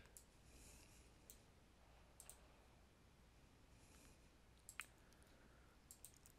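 Near silence with a few faint, short computer mouse clicks scattered through it, the clearest near the end.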